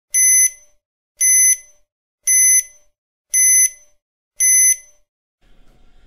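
Countdown-timer sound effect: five short, bright electronic beeps, one a second, each a steady high tone.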